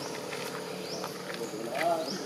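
A short call in a voice that rises and falls in pitch near the end, the loudest sound here, over faint high chirps and a steady background.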